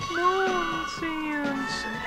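A short snippet of a pop record spliced into a break-in novelty record: a high voice sings long, sliding notes over a faint backing.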